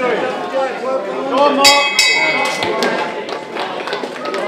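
Spectators shouting over a kickboxing bout, with a few sharp thuds of gloved blows. About a second and a half in, a ringing signal tone sounds for about a second, ending the round.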